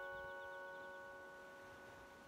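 Music box's last chord ringing out, several metal-tine notes fading slowly toward silence, with a faint fast ticking that dies away about halfway through.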